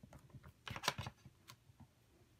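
A few faint, light clicks and taps from a MISTI stamping tool: a clear stamp on its lid is pressed down onto paper, and the clear lid is then lifted. The clicks come in a short cluster about a second in, with one more shortly after.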